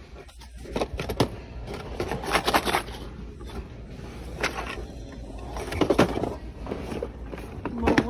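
Indistinct talking, with scattered short knocks and rustles over a low steady background hum.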